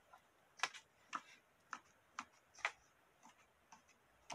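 Pages of a small book flicked past one by one under the thumb: a string of faint, sharp paper ticks, irregular, about two a second.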